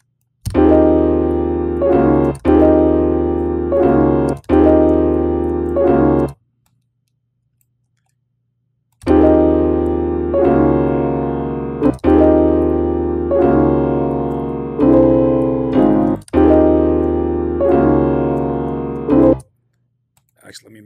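Software piano chords from FL Studio's FL Keys playing back a chord progression, each chord held for a second or two before the next. It plays for about six seconds, stops for about three, then plays again for about ten. The Scaler plugin's own chords are left running and sound along with them.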